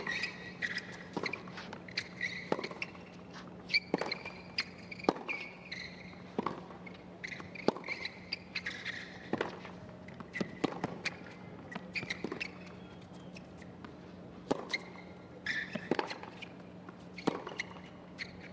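Tennis rally: a ball struck by racket strings back and forth about every second and a half, with shoes squeaking on the hard court between shots.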